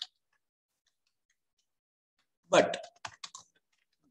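Computer keyboard typing: a quick run of key clicks about three seconds in, following a single spoken word.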